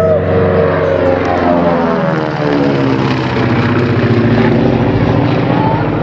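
Twin Pratt & Whitney R-985 Wasp Junior radial engines of a Beech C-45 Expeditor passing low overhead: the propeller and engine drone drops in pitch over the first two seconds as the aircraft goes by, then holds a steady, lower drone as it climbs away.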